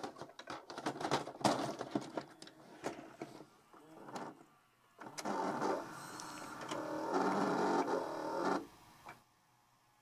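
A VHS cassette is pushed into a front-loading VCR, with clicks and clunks as the mechanism takes it in. Then comes about three and a half seconds of steady motor whirring as the deck threads the tape, stopping shortly before the end. Soon after, the old deck proves not to like this tape, and its tape head is corroded.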